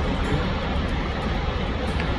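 Steady, even rush of a large waterfall, the Lower Falls of the Yellowstone River, heavy in the low end.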